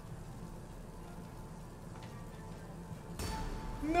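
Faint online slot-game background music playing under the spinning reels, with a short rush of noise about three seconds in.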